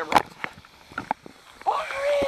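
Handling knocks and clicks as a camera is passed from hand to hand, then a person's drawn-out wordless exclamation near the end.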